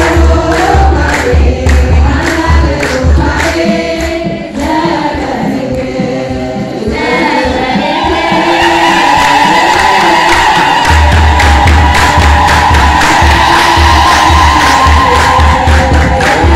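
A women's church choir singing an Ethiopian Orthodox hymn together in unison, loud and echoing. A deep, pulsing beat sits under the voices, drops out about four seconds in, and comes back near eleven seconds, as the singing swells into a sustained high line.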